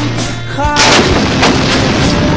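A towed howitzer fires once, about three-quarters of a second in: a sudden blast whose rumble lasts about two seconds. A song with singing plays under it.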